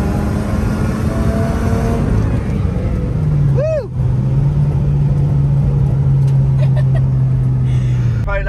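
Car engine running at a steady speed, its pitch dropping to a lower steady note after a cut about three seconds in, where it is heard from inside the cabin. A short chirp that rises and falls is heard just after the cut.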